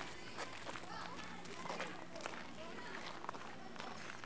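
Footsteps on a sandy, gravelly path, irregular crunching steps of people walking, with faint voices in the background.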